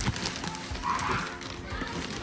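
Clear plastic bag crinkling and rustling in irregular crackles as a pair of sneakers is pushed into it by hand.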